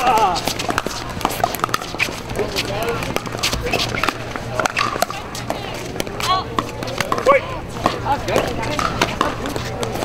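Pickleball paddles striking hard plastic balls, heard as sharp, irregular pops from the rally and the neighbouring courts, over distant voices.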